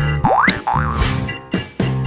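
Upbeat intro jingle with a steady bass beat, topped by a cartoon sound effect whose pitch rises sharply about half a second in.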